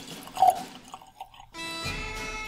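Whisky poured from a bottle into a Glencairn glass, with one loud glug of liquid about half a second in. Bagpipe music starts about one and a half seconds in.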